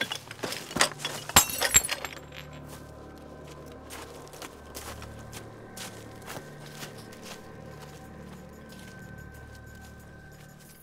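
A burst of sharp cracking and snapping in the first two seconds, the loudest crack about a second and a half in, like a dry stick breaking underfoot in leaf litter. Then a quiet, steady music bed of low held tones.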